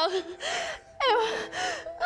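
A woman sobbing, with ragged gasping breaths and broken, wavering cries between them. There is a sharp catch of breath about a second in.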